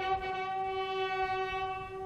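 Military bugle call during a wreath-laying salute: a single long low note held steady, then fading away near the end.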